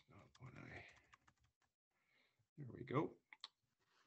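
Faint typing and clicking on a computer, with a short murmured voice about two and a half seconds in.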